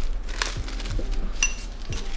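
Small accessory parts and their plastic packaging being handled: a few crackles and clicks, with a light clink about one and a half seconds in.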